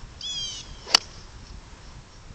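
An iron golf club striking a golf ball off the turf: one sharp click about a second in. A short, high, falling chirp comes just before it.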